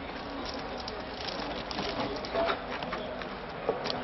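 Light rustling and scattered small clicks of garden hoses being handled, over a low, even background noise.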